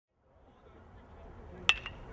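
Metal baseball bat hitting a ball: a single sharp ping about three-quarters of the way through, with a brief ringing after it, over a faint murmur of voices that rises as the sound fades in.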